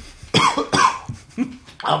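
A man coughing after a swig of scotch: two or three quick coughs about a third of a second in, and a smaller one a little later.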